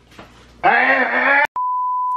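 A man's voice calls out for under a second. The audio then cuts with a click to a steady, loud beep tone of about 1 kHz, a censor-style bleep laid in by the edit.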